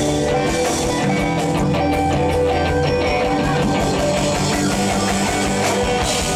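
Live funk band playing steadily: electric guitars, electric bass and drum kit, with a continuous bass line under regular drum beats.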